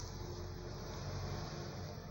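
A steady rubbing, scraping noise for about two seconds as the crystal radio's black baseboard, carrying its coil, is turned and slid across a carpet. It fades out just after.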